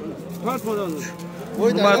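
A cow mooing, a long low steady call, with men talking over it.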